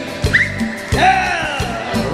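Live Tejano cumbia band playing with a steady bass beat. A brief high rising vocal whoop comes about a third of a second in, over the music.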